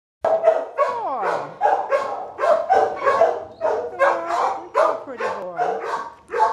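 Dogs barking in quick succession, about two to three barks a second, with a long falling whine about a second in and another near the end.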